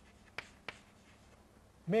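Chalk writing on a blackboard: two short sharp taps of the chalk against the board about half a second in, with quiet between the strokes. A man's voice starts near the end.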